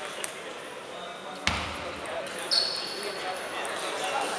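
Table tennis ball knocks in a large hall: a light click near the start and a sharper, louder knock about a second and a half in. A brief high squeak follows about a second later, over background voices.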